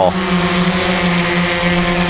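Xdynamics Evolve quadcopter hovering close by, its motors and propellers giving a steady, quite loud hum.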